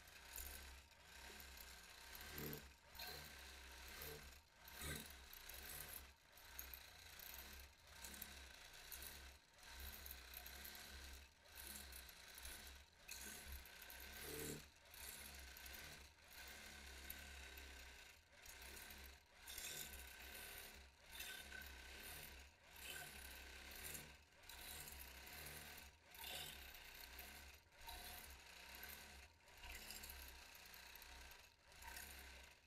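Longarm quilting machine stitching freehand, a faint running rattle over a steady low motor hum. The level rises and dips about once a second as the machine is moved across the quilt.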